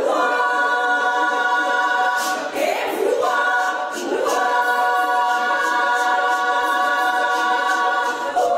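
Georgian women's choir singing a cappella in harmony: long held chords, broken twice by short upward slides in pitch about two and a half and four seconds in, after which a full chord is held to the end.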